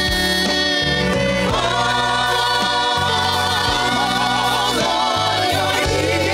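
Gospel vocal group singing together into microphones over a live band, several voices holding notes with vibrato above a moving bass line.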